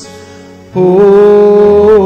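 A single voice singing a slow liturgical melody: one note dies away, and after a short pause a long held note starts about three quarters of a second in.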